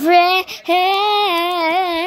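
A young girl singing unaccompanied: a short note, then after a brief break a long held note that wavers slightly in pitch.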